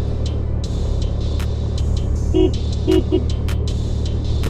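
Suzuki Access 125 scooter's single-cylinder engine running steadily while riding, with a horn giving three short beeps about two and a half to three seconds in.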